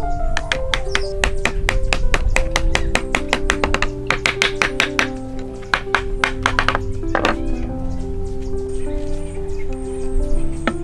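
Background music over a quick run of hammer taps on wood as wooden pieces are knocked together into a joint, the taps stopping about seven seconds in.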